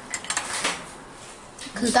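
A few light clicks and clinks in the first second as a small white plastic case is handled and turned over in the hand.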